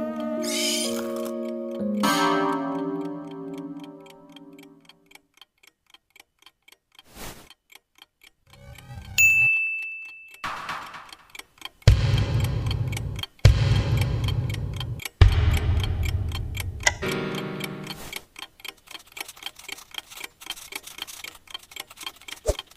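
Wall clock ticking evenly, about three ticks a second, as a short melody dies away in the first few seconds. Partway through comes a brief high beep, then three loud, low rumbles each over a second long, after which the ticking carries on.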